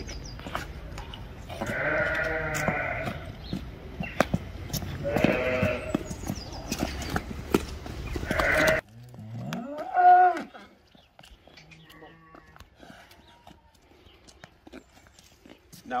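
Sheep bleating: several long, wavering calls in the first half, then a fainter single call about ten seconds in.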